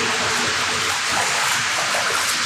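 Steady rush of running water in a concrete storm-drain tunnel.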